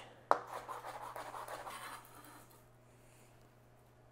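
Kitchen knife on a cutting board slicing a serrano chili: one sharp knock, then about two seconds of quiet scratchy slicing that fades out.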